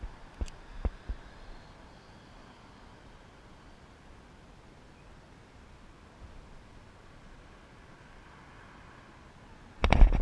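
Faint open-air background with a few sharp clicks and knocks in the first second from handling the fishing rod and reel. Near the end comes a loud cluster of knocks as the rod is jerked to set the hook on a bass.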